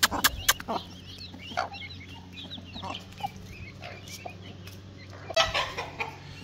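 Domestic hen and chicks clucking and calling as they feed on grain scattered by hand on concrete. There are a few sharp taps near the start and a louder burst near the end.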